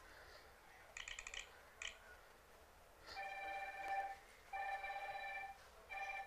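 A phone ringing with an electronic ringtone. A quick pulsed chime sounds about a second in, then a steady ring lasts about a second, twice with a short gap, and a third ring starts at the very end.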